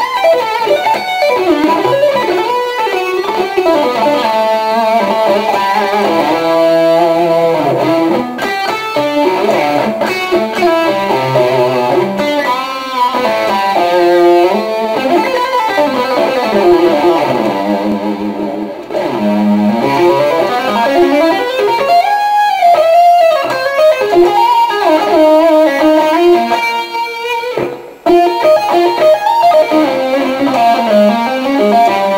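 Solo Ibanez electric guitar improvising fast single-note lead lines, with pitch bends and vibrato. The playing breaks off briefly twice, once about two-thirds of the way in and once near the end.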